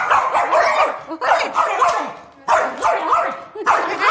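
A small Pomeranian-type dog barking and growling angrily at a hand in three bouts of about a second each.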